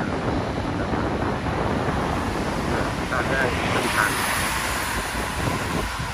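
Wind buffeting the microphone from a moving vehicle, over a steady low road rumble on wet pavement. A hiss swells and fades about four seconds in.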